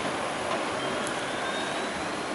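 Steady roar of city street traffic, an even rushing noise with a faint rising whine in the second second.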